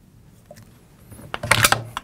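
A short burst of light metallic clicks and rattles about one and a half seconds in, as a steel extension spring is handled and hooked over a pin in the Blitzfire monitor's housing.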